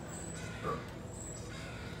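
Quiet outdoor street ambience with one brief, faint animal call about two-thirds of a second in.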